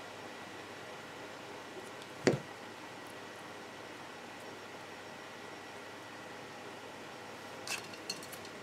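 Quiet, steady room hiss while craft wire is bent by hand, with one sharp click about two seconds in as the jewelry pliers are handled, and two small clicks near the end.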